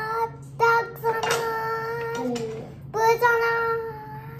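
A young girl singing wordless long held notes at much the same pitch, with two short breaks between them.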